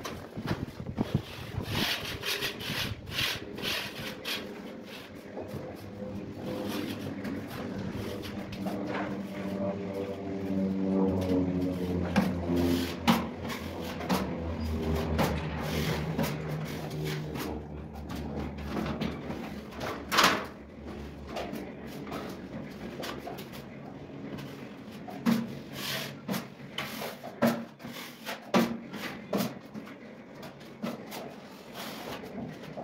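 Steel trowel scraping and tapping as drywall joint compound is worked, with scattered clicks and knocks. A low hum joins in for several seconds in the middle.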